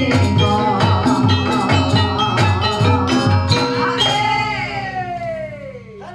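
Gamelan ensemble playing ebeg dance accompaniment: metallophones over a steady drum beat. About four seconds in the ensemble stops on a final stroke, whose ringing dies away with a falling pitch.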